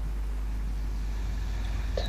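Steady low hum under faint background hiss, unchanging throughout, with no distinct events.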